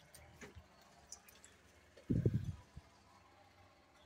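Faint clicks and knocks of a key lockbox being handled on a front-door knob, with one dull thump about two seconds in.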